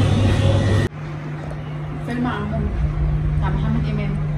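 Loud steady hum of a busy indoor lobby that cuts off abruptly about a second in. It gives way to a quieter, steady low hum with faint voices in a darkened cinema hall.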